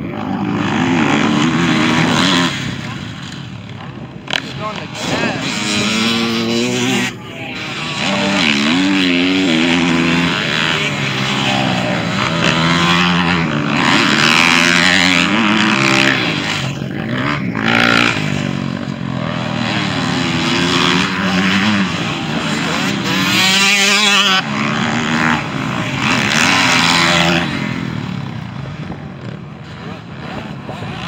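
Motocross dirt bike engines revving hard on a track, the pitch repeatedly climbing and dropping as riders work the throttle and shift through the gears. Several bikes are heard passing and overlapping.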